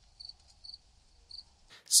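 Cricket chirping: a few short, high chirps about every half second. It is the 'crickets' silence gag, a sound effect laid over a punchline.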